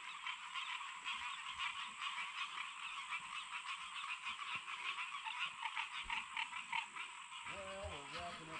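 Chorus of many frogs calling at once: rapid, overlapping honking calls that run on without a break. The speaker takes the mixture for green tree frogs and bullfrogs.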